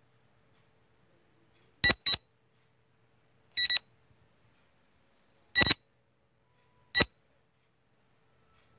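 Short electronic timer beeps, a high pitched tone, about every one and a half to two seconds, the first one doubled.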